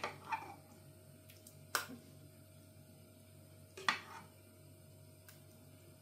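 A metal spoon clinking against ceramic as thick rice pudding is spooned from the slow cooker's pot into a bowl: a few sharp clinks, the loudest about four seconds in, with quiet room tone between.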